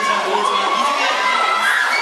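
Crowd of fans screaming and cheering, many high voices at once.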